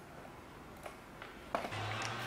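Quiet room tone with a few faint ticks, then a sharp click about a second and a half in, after which the live concert video's audio starts: a low steady hum with faint crowd noise.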